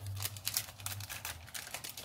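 Cellophane craft packaging crinkling and clicking in quick irregular crackles as plastic-wrapped packs of paper flowers are handled and moved on a table.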